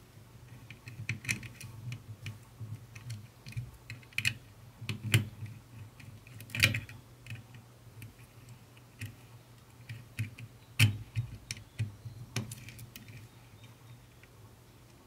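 Irregular small clicks and taps of wire ends and a screwdriver being worked into the screw terminals of an amplifier board, with a few sharper knocks about five, six and a half, and eleven seconds in. A faint steady low hum runs underneath.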